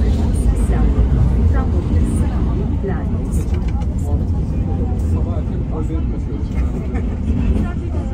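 Inside a moving tram: the steady low rumble of the tram running, with passengers' voices talking indistinctly over it.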